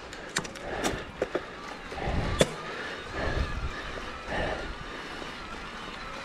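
Mountain bike rolling down a rock slab and dirt trail: a steady tyre rumble and bike rattle, with several sharp knocks, the loudest about two and a half seconds in.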